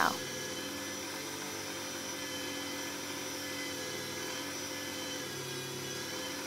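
Countertop blender motor running steadily, grinding oats into fine oat flour.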